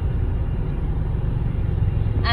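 Steady low rumble of road and engine noise heard inside the cabin of a moving Tata Safari.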